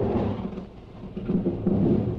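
A deep rumbling noise with a hiss over it, swelling twice and loudest near the end.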